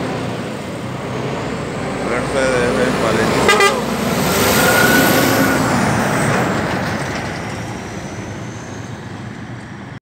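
Mercedes-Benz semi-trailer truck driving past close by, its engine and tyres growing louder to a peak about five seconds in, then fading as it moves away.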